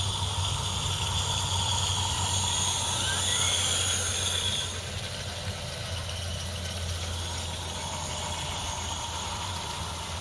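A 16mm-scale model train running past on garden-railway track, with a high squeal for the first few seconds that cuts off suddenly, then a quieter steady rolling sound. A steady low hum runs underneath.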